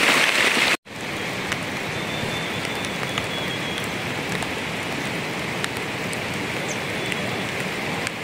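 Steady rain falling, with scattered sharper drop ticks. It cuts out for an instant just under a second in, then carries on a little quieter.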